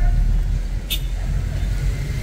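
Steady low rumble of a car driving, heard from inside the cabin: engine and road noise, with a short hiss about a second in.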